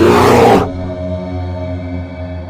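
Intro music: a held, droning chord with a loud rushing burst of noise in the first half second, settling back to the steady chord.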